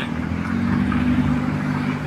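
Cars driving past close by on the road, a steady low engine hum.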